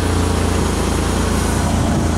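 1995 Ford Ranger's 2.3-litre four-cylinder engine idling steadily.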